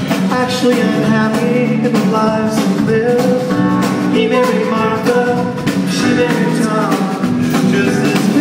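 Live band playing a pop-rock song on piano, drum kit and electric guitar, heard from the audience.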